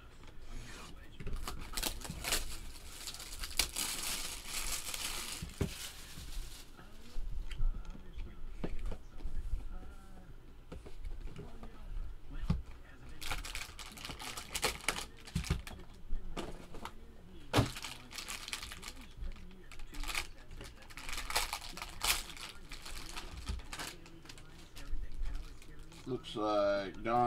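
Cellophane shrink-wrap being torn and crinkled off a trading-card box and its packs, in three stretches of crackling, with scattered taps and knocks of cardboard being handled.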